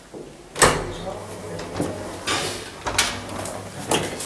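Elevator door: one sharp, loud knock about half a second in, followed by several lighter knocks and clicks.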